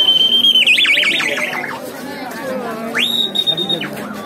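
Shrill whistle-like tones over crowd chatter. A rising note is held for most of a second, then breaks into a rapid warble. A second, higher held note sounds near the end.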